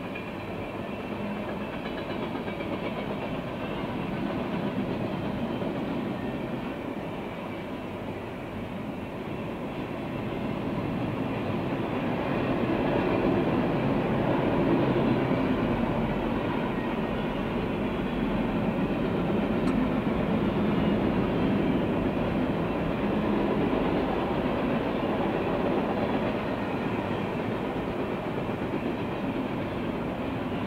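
Freight train cars (tank cars, covered hoppers and gondolas) rolling past at steady speed: the steady rumble and rattle of steel wheels on rail, growing louder about halfway through.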